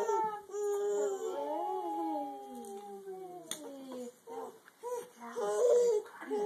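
A baby's fussing cries: one long wail about a second in that slides down in pitch over some three seconds, then shorter whimpers and a louder cry near the end.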